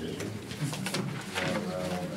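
Sheets of paper being handled and shuffled at a table, a few short crisp rustles, over low, indistinct murmuring voices.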